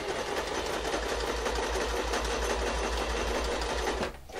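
Domestic electric sewing machine running steadily at a constant speed, stitching a dart in sheer fabric. The needle stroke beats a fast, even rhythm.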